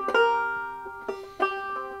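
Banjo picked solo: a plucked chord at the start rings out and fades, then a few more picked notes come in about a second in.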